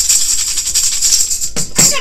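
A handheld ring tambourine with metal jingles shaken in a rapid, continuous rattle that stops about a second and a half in, followed by one more short shake near the end.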